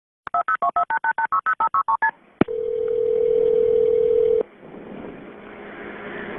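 Telephone touch-tones: about a dozen quick two-tone keypad beeps dialing a number, then a click and a single steady tone for about two seconds, the ring signal on the line, which cuts off and leaves faint line hiss.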